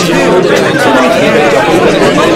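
Several voices talking over one another at once, a steady babble of overlapping speech.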